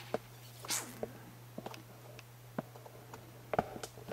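Faint handling noise of a cardboard box held in the hands: a short rustle a little under a second in and a few scattered light clicks, over a steady low hum.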